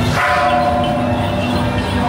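A metal bell struck about a fifth of a second in, its ringing tone fading over about a second, over continuous procession music.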